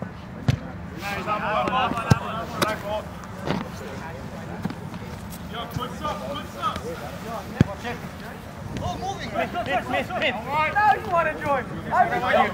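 A soccer ball being kicked on a grass pitch: several sharp thumps a second or more apart, among players' shouts and calls.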